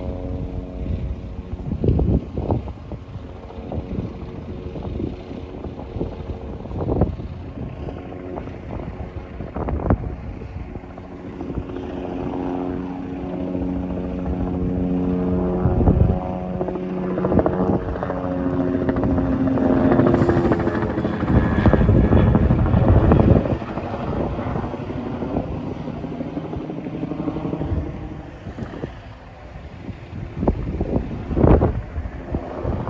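A steady engine drone holding one pitch, strongest through the first half, with scattered short thumps and gusts of rushing noise that are loudest about twenty seconds in.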